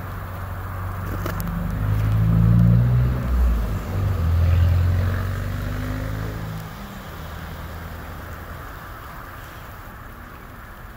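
A road vehicle's engine passing close by. It swells to a peak a couple of seconds in, holds for a few seconds, and fades away by about seven seconds, leaving a steady background hiss.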